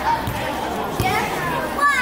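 Children's voices calling and chattering while they play, with a couple of short, dull thumps about a quarter second and about a second in.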